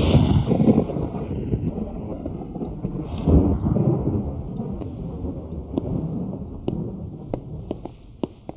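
A deep rolling rumble that swells right at the start and again about three seconds in, then dies away. Near the end come a few footsteps on a wooden floor.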